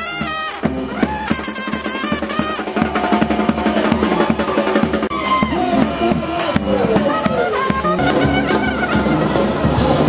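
Brass band playing: trumpet lines, some sliding in pitch, over a steady beat of bass drum and other drums.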